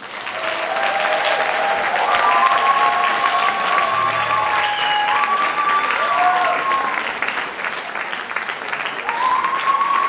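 An audience applauding a band after its song, starting suddenly, with long high-pitched calls from the crowd rising over the clapping for most of the first seven seconds and again near the end.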